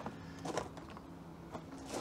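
A few short, light knocks and clicks of plastic paint cups being put down and picked up on a table.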